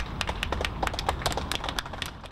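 A small group of people applauding: a run of quick, irregular individual hand claps.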